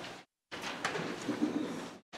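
A congregation reading aloud in unison, the many voices low and indistinct, cutting out abruptly for a moment near the start.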